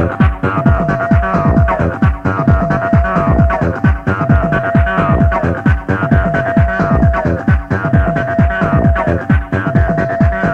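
Early-1990s electronic dance music from a club DJ set, taped on cassette: a fast, steady kick-drum beat under a repeating synth riff whose held note slides down in pitch about every two seconds.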